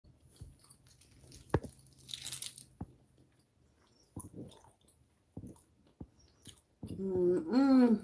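Gum chewing close to a phone's microphone: soft wet mouth clicks, with a few sharper clicks and a brief rustle in the first three seconds. A woman's voice starts near the end.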